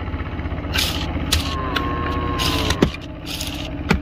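A long-handled blade chopping and scraping through dry brush and twigs, in several short crackling strokes, over a steady low hum. A thin held tone sounds near the middle.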